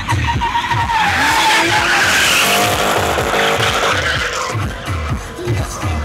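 BMW E36 drift car with an E36 M3 straight-six engine sliding past under power, its tyres skidding and squealing over the engine noise, loudest from about one to four and a half seconds in. Electronic music with a steady beat plays underneath.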